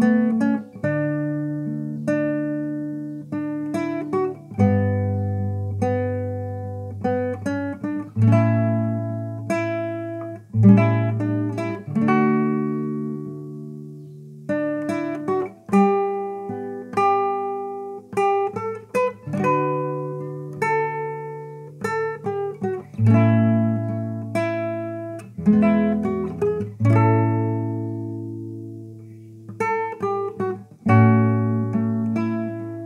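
Nylon-string classical guitar fingerpicked, playing a slow hymn melody over low bass notes; each note starts sharply and rings out as it fades.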